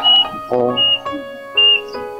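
Soft film score with sustained keyboard notes, with three short high chirping notes about three-quarters of a second apart, under a brief bit of dialogue.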